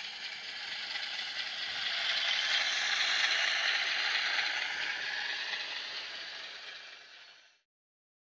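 Model Class 153 railcar running across a model viaduct: a steady mechanical rattle of its wheels and drive on the track, growing louder as it passes about three seconds in, then fading, before cutting off abruptly near the end.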